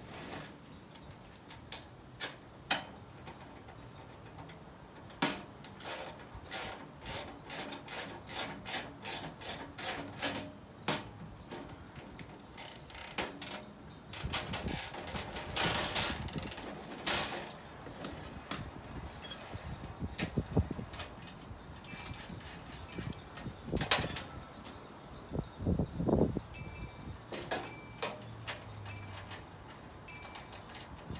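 Hand socket ratchet clicking in a steady run of about two strokes a second as bolts are tightened on a steel tool cart, followed by scraping and scattered metal knocks of tools and hardware against the cart's steel.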